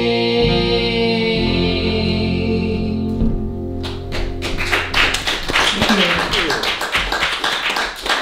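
The final chord of the song on guitar rings out and fades. About four seconds in, clapping breaks out as the song ends.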